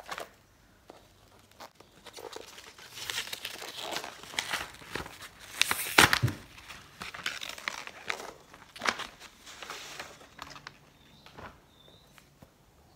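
A parcel's packaging being torn open and crumpled by hand: irregular crinkling rustles and tears that come and go for several seconds, loudest near the middle.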